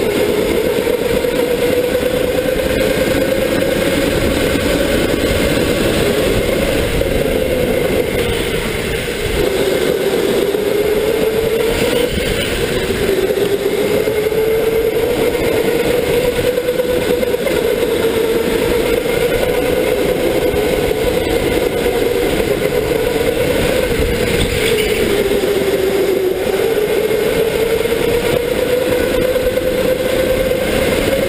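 Electric go-kart motor whining under racing load, its pitch rising and falling with speed and dipping every few seconds, over a steady rush of noise.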